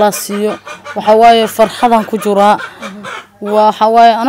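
A woman's voice talking in Somali, in short phrases with brief pauses, and a longer pause about three seconds in.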